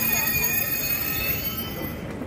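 Eurostar high-speed train giving off several steady high-pitched whining tones over a low rumble. The highest tones fade out near the end.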